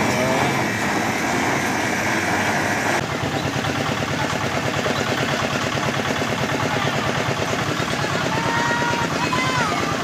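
A small engine runs steadily with a fast, even pulse, under a background of people's voices.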